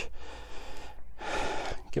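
A man breathing hard with exertion, two long heavy breaths, as he hauls himself up over a rock ledge on a rope with an ascender and foot loop.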